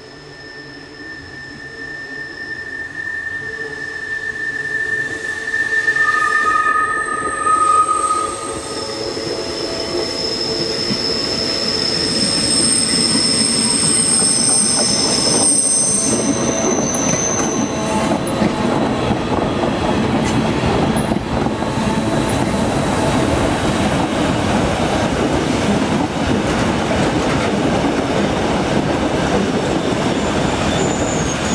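Rhaetian Railway ABe 8/12 Allegra electric multiple unit hauling passenger coaches round a tight curve, its wheels squealing in several high, steady tones as it approaches and grows louder. From about halfway through it runs close past with steady wheel-on-rail noise.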